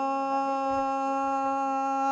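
A dengbêj singer's voice holding one long sung note at a steady pitch, the drawn-out end of a Kurdish dengbêj phrase.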